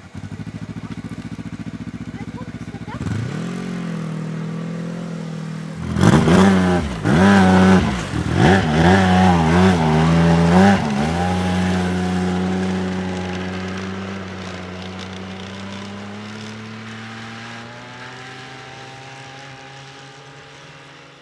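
Snowmobile engine running, its pitch rising about three seconds in, then revved hard up and down several times for about five seconds, the loudest part. After that it holds a steady pitch and slowly fades as the sled moves away.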